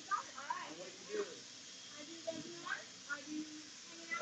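Faint background chatter of several distant voices in a room, with no close speaker.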